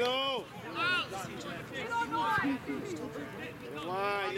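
Voices shouting across an open sports field: several separate, unintelligible calls from players and spectators, the loudest right at the start and about a second in.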